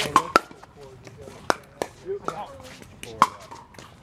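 Pickleball rally: sharp pocks of paddles hitting the plastic ball, several hits a second or so apart, two of them close together at the start.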